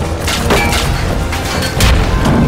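Film battle sound effects: a deep, continuous explosion-and-fire rumble with sharp cracking, crashing impacts of metal and debris. The loudest crack comes about half a second in and another just before the end.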